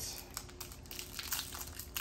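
Foil trading-card pack wrapper crinkling as it is handled, a run of light, irregular crackles.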